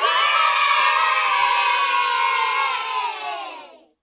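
A group of children cheering and shouting together in one sustained cry, starting suddenly and fading out near the end.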